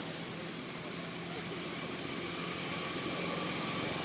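Steady low background hum with a faint, constant high-pitched whine above it; no distinct event stands out.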